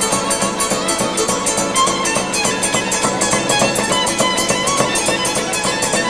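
Traditional Maramureș folk music: a violin plays the melody over a guitar strummed in a steady, even rhythm.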